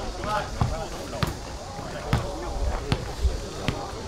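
Irregular sharp thumps of a ball being kicked or struck on the pitch, about eight in four seconds, with voices talking in the background.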